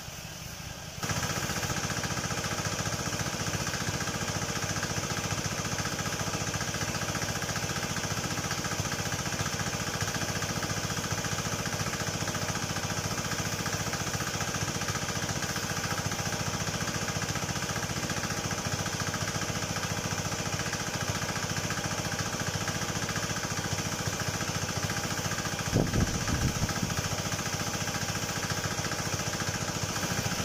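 Motorized high-pressure sprayer pump running steadily, with the hiss of the spray jet from the gun's nozzle, louder from about a second in. There is a brief knock near the end.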